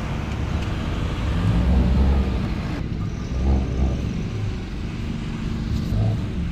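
Road traffic: cars driving past with a steady low rumble. About three seconds in, the sound changes suddenly and its high end drops away.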